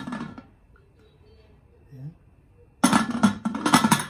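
Aluminium pressure cooker lid being twisted and locked shut on the pot: a loud metallic clatter and clinking of lid against rim for about a second near the end.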